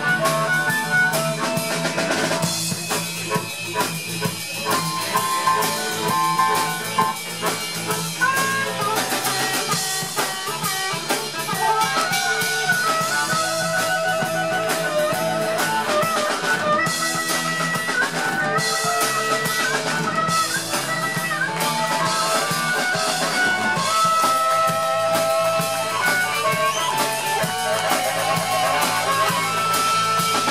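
Live blues-rock band playing: drum kit, electric guitar and keyboard, with a harmonica playing held melodic lines.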